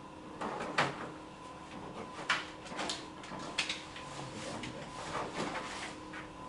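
Papers being handled and shuffled at a table: several short, sharp rustles and light knocks at irregular moments, over a faint steady hum.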